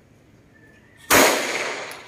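A single handgun shot about a second in, followed by a long decaying echo.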